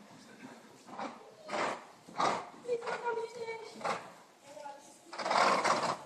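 Horse cantering on arena sand: a soft beat of hooves and breath about every two-thirds of a second, with a longer louder rush of noise near the end. A voice is heard briefly in the middle.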